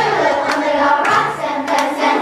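A children's chorus singing a song over a backing track, with handclaps keeping the beat about twice a second.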